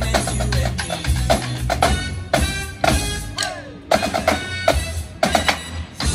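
Marching snare drums played in unison over recorded backing music. About two seconds in the playing breaks into a series of sharp accented hits with short gaps between them.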